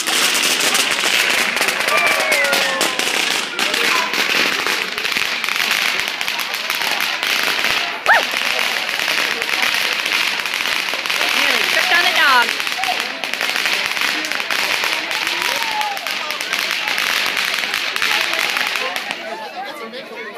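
Ground fireworks in the street crackling and popping rapidly and without a break, loud, with two sharper bangs about eight and twelve seconds in. The crackling stops just before the end.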